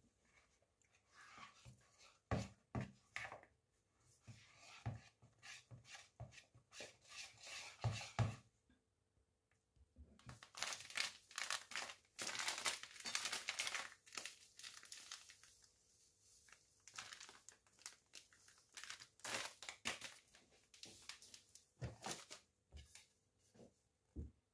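A wire whisk knocking and scraping in a bowl of thick batter, then a plastic-wrapped packet of breadcrumbs being torn open, crinkled and shaken out, with loud crackling from about ten seconds in.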